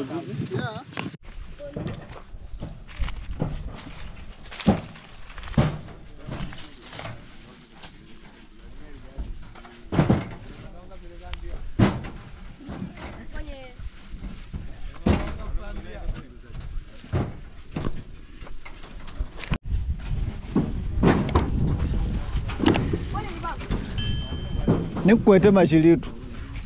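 Fired clay bricks knocking and clacking as they are handled and stacked onto a truck bed: irregular sharp knocks every second or two. Voices talk in the background, and a low rumble comes in during the last third.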